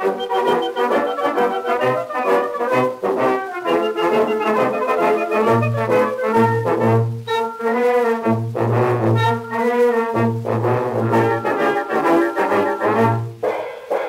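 Early acoustic-era recording of a brass band playing a march, reproduced from a 78 rpm shellac disc: trombones and trumpets carry the tune over a repeated low bass line, with a short drop in volume near the end.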